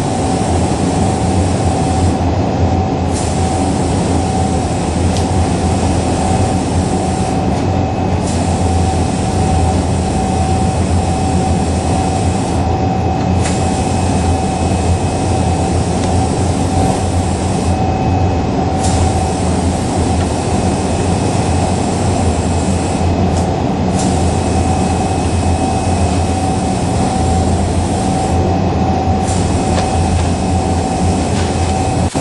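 A machine running steadily and loudly: a continuous low hum with a steady mid-pitched whine over it, and no separate knocks or impacts.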